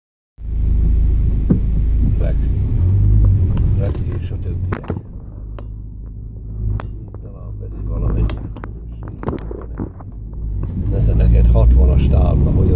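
Low rumble of a car driving over a rough, rutted dirt road, heard from inside the cabin, with scattered knocks and rattles as it goes over the bumps.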